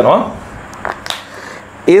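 A man speaking in a small room, breaking off into a short pause in which two sharp clicks sound about a second in, then speaking again near the end.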